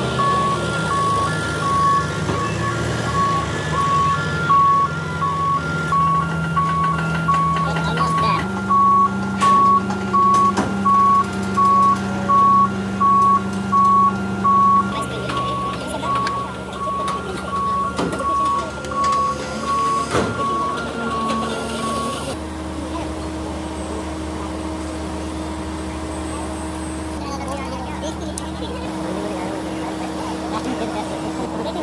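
Crawler crane's diesel engine running under load while a warning alarm beeps a little more than once a second; the beeping stops about two-thirds of the way through and the engine note shifts several times.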